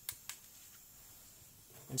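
Near silence with a faint steady hiss, after two faint clicks in the first third of a second.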